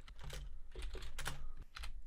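Typing on a computer keyboard: a quick run of keystroke clicks as a word is typed.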